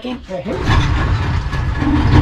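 A boat's outboard motor running with a low, rapidly pulsing rumble that grows louder about half a second in, as the throttle opens or the motor picks up.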